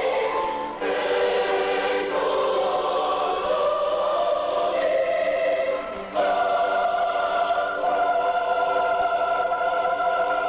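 A mixed high school choir singing held chords in several voice parts. The phrases break off briefly about a second in and again at about six seconds, each time moving to a new chord.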